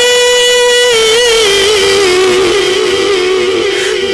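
A man's voice singing devotional verse through a PA system. He holds one long sustained note, then about a second in drops slightly and winds it through slow wavering ornaments until the phrase ends near the end.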